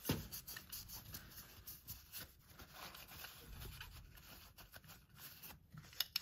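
Paper towel rubbing and rustling against a car's metal throttle body as it is wiped dry of solvent, faint and irregular, with a short knock right at the start.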